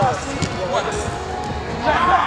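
Footballers shouting and calling out during play, with short thuds of the ball being kicked on artificial turf.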